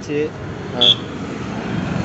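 Steady roadside traffic noise with brief snatches of voices. A short, high beep about a second in is the loudest moment.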